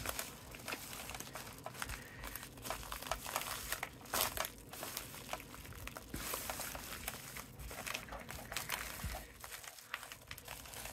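A plastic USPS padded flat-rate bubble mailer crinkling and rustling as hands press it flat and handle it. The crackles come irregularly, with louder ones about two and four seconds in.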